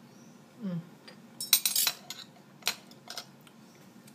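Metal fork and knife clinking against a ceramic plate as they are set down: a quick cluster of clinks about a second and a half in, then two single clicks.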